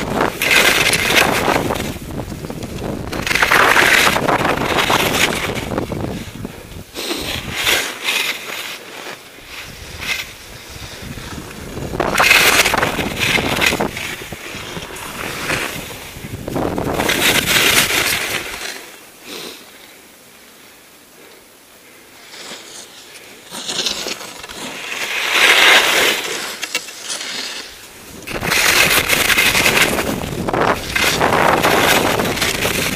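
Skis scraping over snow through a series of mogul turns, each turn a surge of scraping noise a few seconds apart, about seven in all. A few seconds of quieter pause come about two-thirds of the way through.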